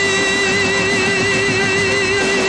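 Male singer holding one long sung note with vibrato over orchestral backing, in a live recording.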